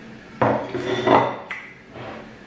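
Close-miked wet mouth sounds of fingers being licked and sucked clean of fufu and okra soup, lasting about a second, followed by a single sharp click.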